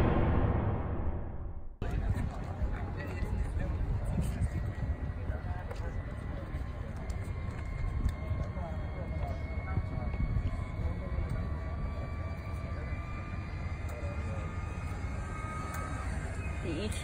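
Mercedes Vision EQ Silver Arrow electric concept car's synthesized exterior sound: a faint steady electronic hum with thin high tones, under wind rumble on the microphone. It opens with the fading tail of a boom sound effect that cuts off about two seconds in.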